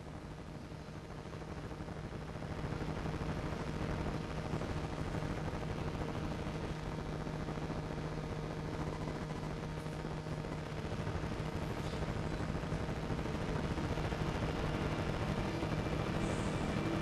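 Sound-system hum with crackling, rumbling noise through the hall speakers. The noise grows louder over the first few seconds, then holds steady.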